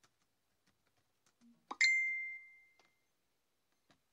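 A single bell-like ding about halfway through: a short low tone, then a clear high ringing note that fades away over about a second.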